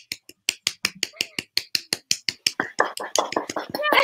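Hands clapping in a fast, even rhythm, about seven claps a second. A voice joins in over the last second or so.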